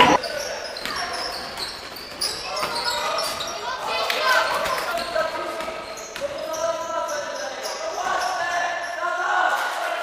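A basketball bouncing on a wooden gym floor during play, with players' voices calling out.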